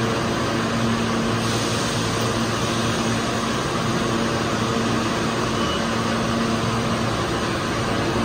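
An R160 subway train standing at the platform with its doors open, giving a steady hum with a constant low drone under an even rush of noise.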